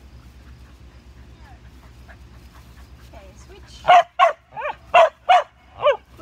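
Border collie barking six times in quick succession, sharp high barks over about two seconds starting about four seconds in, the third bark weaker than the rest.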